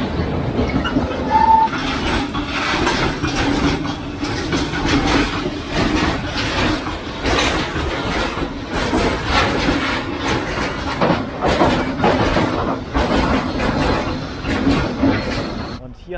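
Freight train of wagons carrying lorry trailers passing close by: a loud, continuous rush with a rapid clickety-clack of wheels over the rail joints.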